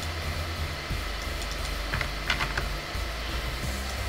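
Computer keyboard keystrokes: a few scattered clicks, with a short burst of typing about two seconds in, over a steady low hum.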